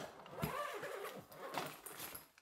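A hard-shell suitcase being pressed shut: a knock about half a second in and another near the end, with a short pitched sound that rises and falls between them.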